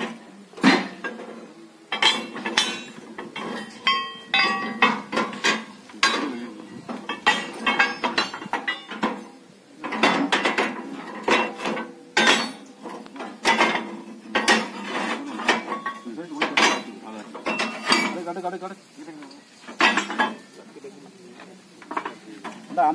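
Iron implement parts being stacked onto a motorcycle's carrier, clanking and clinking against each other and the metal frame in irregular knocks, some of which ring briefly.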